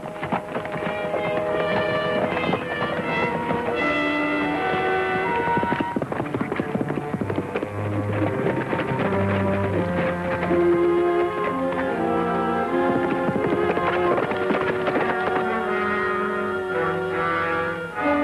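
Orchestral film score playing a brass-led action cue, with horses' hooves galloping beneath it.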